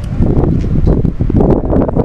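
Wind buffeting and rustling on a body-worn camera's microphone: a loud, rough crackle with a low rumble under it.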